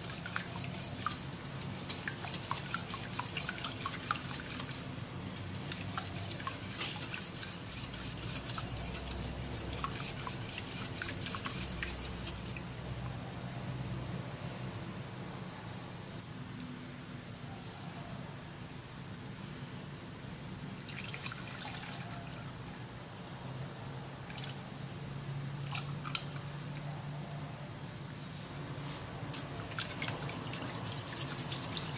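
Wire whisk beating eggs in a glass bowl, a rapid run of light clicks against the glass for about the first twelve seconds, then stopping, with a few short bouts later. Underneath, sugar and water bubbling in a pan as it cooks down toward caramel.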